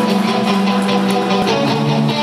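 Rock band playing live: guitar strumming chords over a steady, rhythmic beat.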